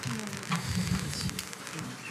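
Low murmur of voices in a press room, with scattered sharp clicks of press photographers' camera shutters.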